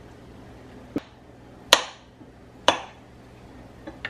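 Three sharp knocks, about a second apart, as pieces of chilled butter are broken off and put into a small plastic food processor bowl of flour.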